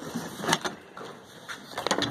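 Tools being handled in a plastic tote: a few sharp knocks and clatters as a corded angle grinder is lifted out and set down on plywood, the loudest about half a second in and another cluster near the end.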